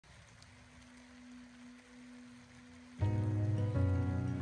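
Faint steady rain with a low hum for about three seconds, then background music with sustained chords starts suddenly and carries on.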